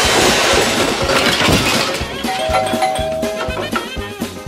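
Background music with a steady beat. Over the first second or so comes a loud, noisy rush of sound, and past the middle a two-note doorbell chime, high then low, rings out for about a second.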